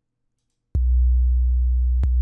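Deep 808-style sub-bass synth note, a custom preset made in Native Instruments Massive, starting abruptly about three-quarters of a second in after silence and held steady, very low and loud.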